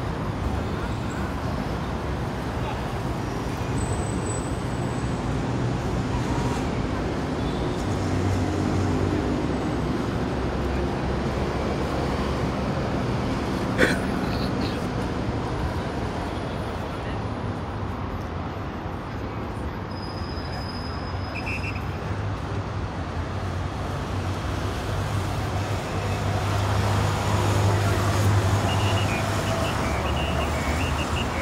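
Outdoor city street noise: a steady hum of passing cars and buses, with faint voices and one sharp click about halfway through.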